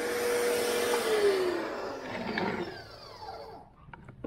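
Kawasaki HPW 220 pressure washer's motor and pump running with a steady hum, then spinning down: about a second in the hum drops in pitch and the sound fades out toward the end.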